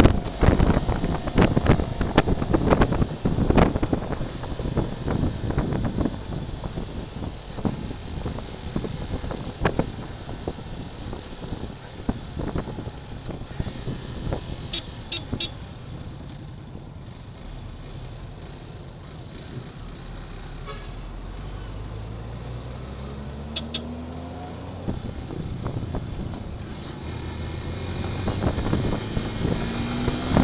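Wind rushing over a motorcycle-mounted camera's microphone at road speed, easing as the bike slows. Then the motorcycle engine running at low speed, with short horn beeps a little before halfway and again later, and the engine rising in pitch as the bike speeds up.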